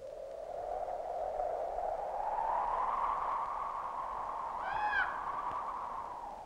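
Wind with a hollow rush that slowly rises in pitch and then holds steady. A single short, high call rises and falls once, about five seconds in.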